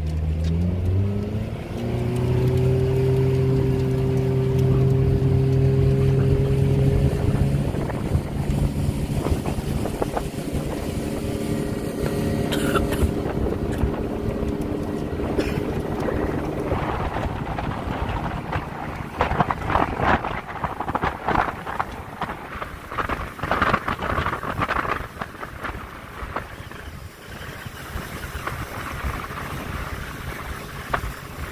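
Motorboat engine throttling up, its pitch rising about a second in and then holding steady, as the boat speeds away. After several seconds the engine note fades under the rush of water along the hull, with rapid slapping of waves against the hull.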